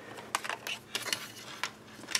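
Small clicks and taps of a DC power plug and its lead being handled and pushed into a 3D printer's plastic control box, a dozen or so light irregular clicks over two seconds.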